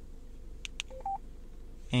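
Two light clicks followed by two short electronic key beeps, a lower one then a higher one, from a Yaesu FTM-100DR mobile ham radio as its front-panel keys are pressed to type in a text message.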